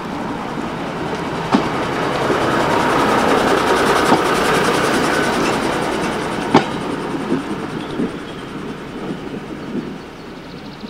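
Leyland railbus RB004, a single-car diesel railcar, rolling slowly past close by: its engine and running noise build to a peak about four seconds in, then fade as it moves away. Several sharp clicks come as its wheels cross rail joints.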